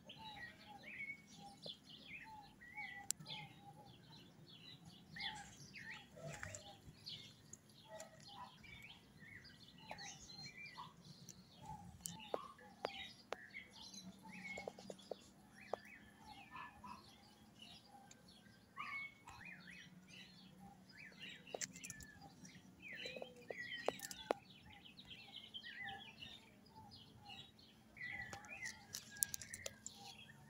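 Several small birds chirping faintly, with many short, overlapping calls all through, over a low steady hum and a few sharp clicks.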